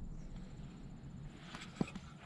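Quiet outdoor background with faint handling noise and a single sharp tap near the end, as hands work at a wooden picnic table.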